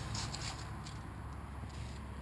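Quiet room tone: a steady low hum with a few faint light ticks in the first second.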